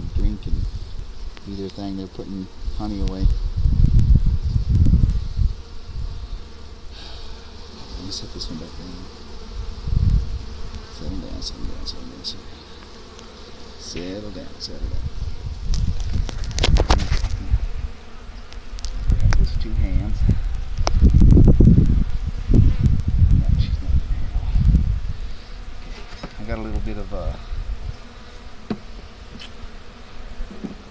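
Honeybees buzzing around an open hive, with individual bees flying close past in wavering whines several times. Bursts of low rumble come and go, the loudest about two-thirds of the way through.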